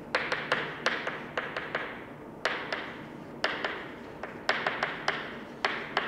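Chalk writing on a chalkboard: an irregular run of sharp taps and clicks, some in quick clusters, as the chalk strikes and drags across the board. Each click rings briefly in the room.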